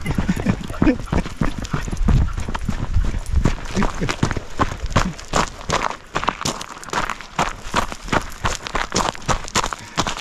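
Footsteps crunching on loose gravel and pebbles at a lakeshore: a steady run of irregular crunches, several a second, from a person and leashed dogs walking over the stones.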